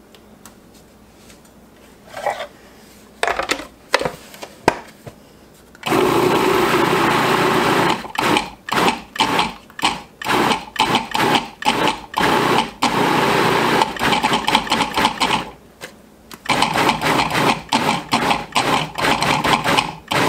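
Food processor chopping strawberries: a few knocks and clicks, then about two seconds of continuous running, followed by many short pulses of about two a second, with a brief pause near the end. It is pulsed so the fruit stays a little chunky.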